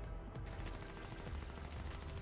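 Rapid gunfire from an animated action scene's sound track, bullets ringing off metal in a dense continuous rattle that starts about half a second in.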